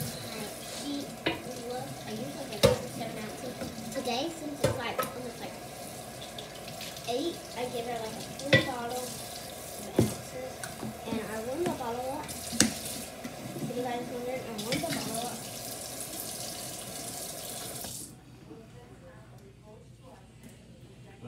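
Kitchen tap running steadily, with sharp clicks and knocks from a plastic baby bottle being handled; the water shuts off suddenly about two seconds before the end.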